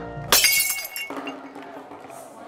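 Window glass smashed by a thrown stone: a sudden crash about a third of a second in, then the glass rings and tinkles briefly as it dies away.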